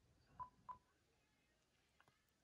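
Near silence, broken by two short, faint beeps about a third of a second apart, both within the first second.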